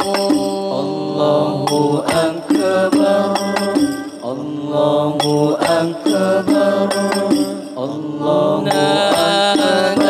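A male solo voice singing an Arabic devotional sholawat melody, with long held notes that bend in pitch. Hadroh banjari frame drums play a steady beat under the voice.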